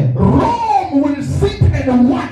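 A man's loud voice shouting into a handheld microphone in short, impassioned phrases, with no recognisable English words.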